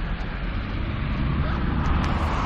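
Steady road traffic noise from a multi-lane road: an even hiss over a low rumble.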